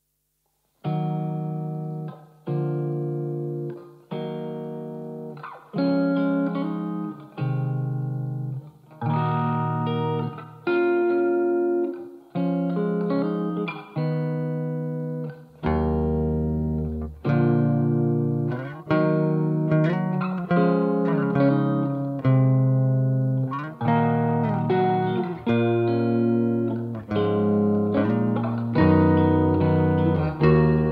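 Indie-folk guitar music: separate guitar chords, each left to ring and fade, about one every one and a half seconds, starting after a second of silence. A low bass part joins about halfway through.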